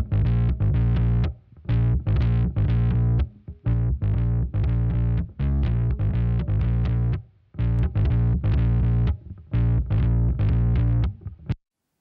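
Distorted fuzz bass guitar playing a riff of short repeated-note phrases. For the first half it runs through a Waves L2 limiter, loud with every note at the same level. About halfway through the limiter is bypassed and the bass plays slightly quieter and unlimited.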